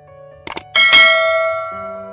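Subscribe-button animation sound effects: a quick double mouse click about half a second in, then a bright bell ding that rings out and fades over the next second, over soft background music.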